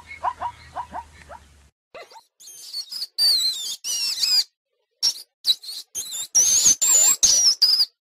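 High-pitched squeaking and twittering of an elephant shrew: loud broken bursts of warbling, wavering squeaks with short silences between them, starting about two seconds in. Before that, a run of short rhythmic calls, about four a second, carries over from the previous animal and fades out.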